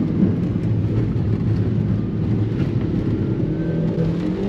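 Daihatsu Copen's 660 cc turbocharged four-cylinder engine running under steady load through a corner, over the hiss of tyres on a wet track.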